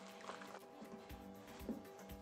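Soft background music with steady held notes. Under it, faint soft sounds of thick choux paste being beaten in a stainless steel bowl.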